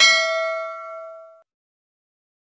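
Notification-bell sound effect of a subscribe-button animation: one bright bell ding that rings with several pitches and fades, cutting off about a second and a half in.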